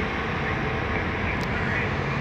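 Steady roadside traffic noise, with an articulated BRT bus driving past in its lane.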